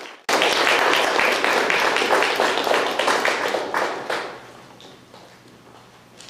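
Audience applauding, dying away about four seconds in.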